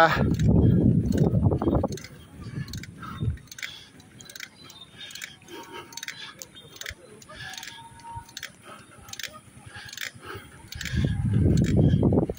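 Low rumbling noise in the first two seconds and again near the end, with faint voices of people in between.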